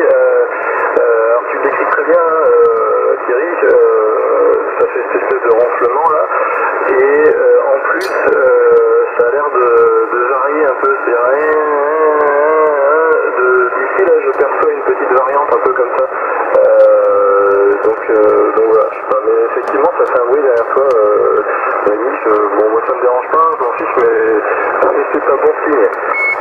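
A voice talking steadily, received over a Yaesu FT-450 HF transceiver in upper sideband. It sounds thin and narrow, with no bass or treble.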